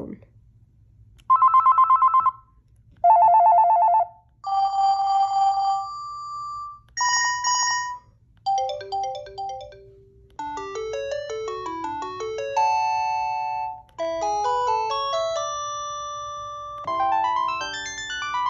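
A Panasonic KX-TGC222 cordless phone handset plays its ringer tones one after another. First come several short electronic trilling rings, each a second or two long. From about halfway it plays multi-note electronic melodies.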